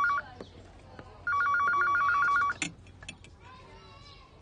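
Home telephone ringing with a rapid two-tone electronic trill in bursts of just over a second: one burst ends just after the start and a second rings about a second later, followed by a sharp click.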